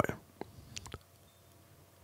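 A few faint, short mouth clicks and lip smacks close to a microphone in the first second, then near silence.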